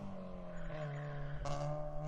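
Car engine sound effect: a steady, even drone that holds its pitch.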